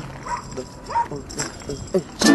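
A few short, separate yelp-like vocal calls, each with a quick rise in pitch, quieter than the talk and music around them.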